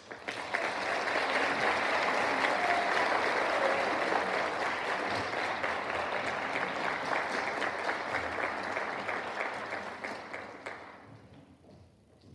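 Audience applauding at the end of a choir piece. The clapping swells at once, holds steady for about ten seconds, then dies away near the end.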